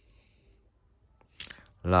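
Ratchet handle giving a short, sharp burst of metal clicks about one and a half seconds in.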